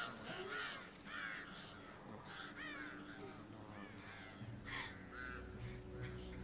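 Crows cawing over and over, several calls close together, on a film soundtrack. Low, held music comes in about two-thirds of the way through.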